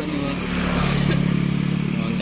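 Drag-racing motorcycle engine idling steadily, an even low hum with no revving.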